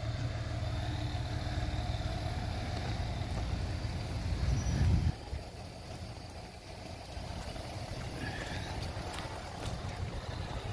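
Low rumble of an idling truck engine, growing louder until about five seconds in and then dropping off suddenly to a quieter rumble.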